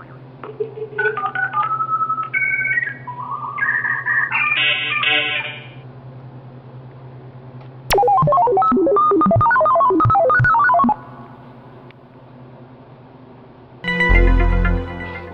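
Electronic beeping tones stepping up and down in pitch, like a simple synthesizer or phone keypad. There is a run of short notes in the first six seconds, then a louder, faster run of jumping notes from about eight to eleven seconds, over a steady low hum.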